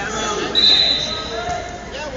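Voices of people in a large echoing gym hall around a wrestling bout, with one short, steady, high-pitched squeal about half a second in that lasts under a second.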